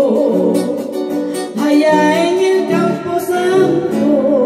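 Peruvian huayno song: a woman singing a wavering, gliding melodic line over plucked acoustic-electric guitar accompaniment.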